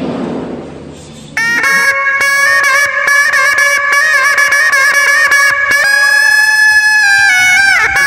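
A shrill double-reed wind instrument, the tarompet of pencak silat music, starts abruptly about a second and a half in and plays a loud, sustained, wavering melody of long held notes.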